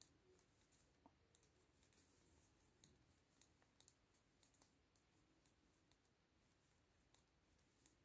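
Very faint, irregular clicks of knitting needles touching as stitches are purled, coming every half second or so at first and thinning out after about five seconds.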